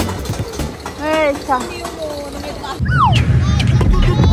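Riders on a small children's roller coaster shouting and squealing as the train runs, with a long falling cry near three seconds in. After that a steady, heavy low rumble of wind and ride motion takes over on the onboard microphone.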